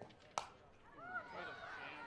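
A single sharp crack of a softball bat meeting the pitch about a third of a second in: the batter is jammed, hitting the ball off the handle. It is followed by crowd voices calling out as the ball is put in play.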